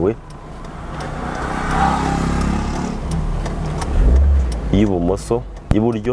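A small car going by, its engine and tyre noise swelling and then fading over a few seconds, with a deeper rumble about four seconds in.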